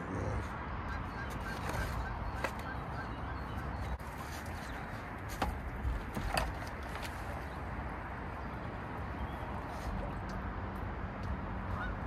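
Scattered knocks and clanks as a submersible pump on its hose is handled and lowered into a flooded engine bilge, over steady outdoor background noise; a low steady hum comes in about ten seconds in.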